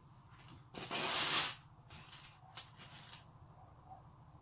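Handling noise from a strand of plastic craft pearls being worked onto a pin cushion: one loud rustle about a second in, with a few light clicks and taps around it.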